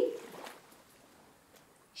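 Sand shifting inside a small toy treasure chest as it is shaken, a faint soft hiss that fades to near silence.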